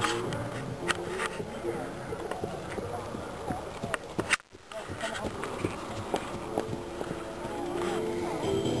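Indistinct voices of people talking in the background, too faint to make out, with a few scattered sharp clicks. The sound drops out briefly about halfway through.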